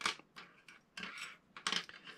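Slim metal lock picks clicking and clinking against one another and the wooden bench top as they are picked up and laid down: a few light ticks, then a louder cluster near the end.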